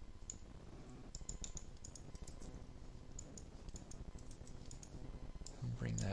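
Light, scattered clicks from a computer mouse and keyboard, a few a second at irregular spacing, over a faint low hum; a man starts speaking right at the end.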